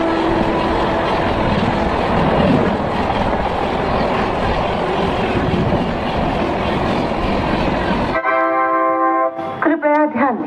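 Indian Railways passenger coaches passing close by at speed, a continuous rumble and hiss of wheels on rail. It cuts off abruptly about 8 seconds in and gives way to a steady horn tone of about a second, and a voice begins near the end.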